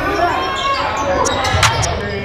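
Live indoor basketball game audio: a ball bouncing on a hardwood gym floor and players' voices, with one sharp knock about one and a half seconds in.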